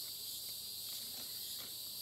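Steady high-pitched chorus of insects such as crickets, droning evenly with no breaks.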